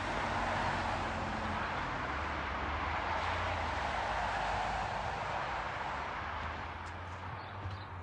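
Road traffic: cars driving past with a steady rush of tyre and engine noise that dies down near the end.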